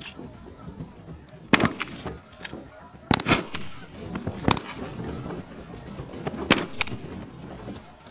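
A volley of shotguns firing: a string of sharp blasts spaced irregularly over several seconds, the loudest about a second and a half in, around three seconds in, at four and a half seconds and near six and a half seconds.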